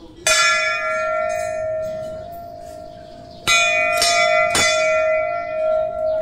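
Hanging temple bell struck once and left ringing with a long, slowly fading tone, then struck three more times in quick succession a little past halfway.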